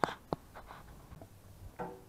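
Two short, sharp clicks about a third of a second apart, followed by a low, quiet background and a man's voice just beginning near the end.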